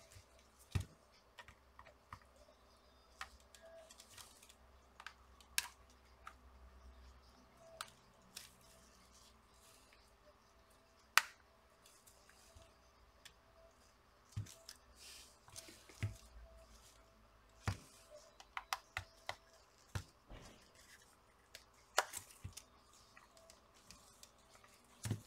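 Irregular small clicks and knocks of a plastic-and-rubber power bank case being handled and pried at along its edges with a thin opening tool.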